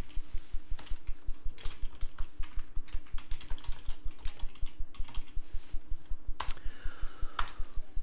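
Typing on a computer keyboard: a quick, even run of keystrokes, with a few sharper clicks among them.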